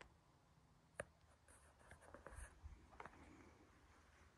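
Near silence with a faint sharp click about a second in, followed by soft scattered taps and scratchy rustles for the next two seconds.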